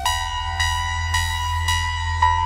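Serge Paperface modular synthesizer playing a patch with added reverb: a steady low drone under a bright pitched note that repeats about twice a second. Right at the start a held tone gives way to this repeating note.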